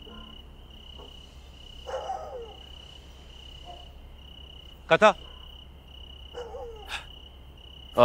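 Crickets chirping as a night-time ambience, a high trill pulsing on and off evenly. About five seconds in, a man's voice calls out a name.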